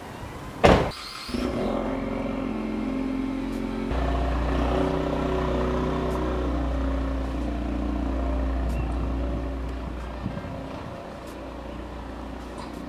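Ford Mustang's door slams shut, then about half a second later the engine starts and runs. About four seconds in the engine note deepens and grows as the car pulls off, then fades as it drives away.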